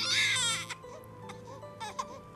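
A newborn baby crying: a loud, wavering wail that breaks off under a second in, with soft background music continuing beneath.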